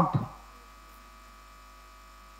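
Faint, steady electrical hum from a microphone and sound system in a pause in speech. The tail of a man's voice is heard at the very start.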